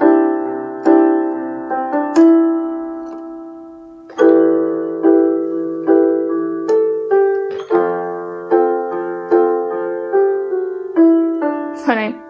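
Portable electronic keyboard in a piano voice, playing fuller chords with added notes such as ninths. About two seconds in, one chord is held and left to fade; from about four seconds, chords and shifting notes follow at roughly two a second.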